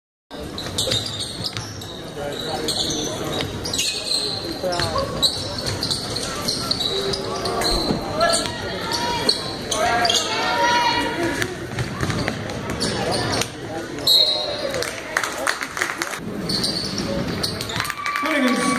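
Basketball being dribbled on a gym's hardwood court, with sneakers squeaking and players and spectators calling out, echoing in the hall.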